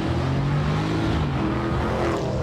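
A car engine running at speed, its pitch dipping and rising a little, over a steady rush of road noise.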